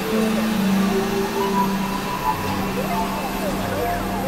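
Dense layered experimental electronic music. A steady low drone of held tones sits under higher tones that slide up and down in repeating zigzags, over a hissing noise bed.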